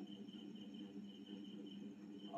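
Faint high-pitched trill of a cricket chirping in pulses, over a low hum of room tone.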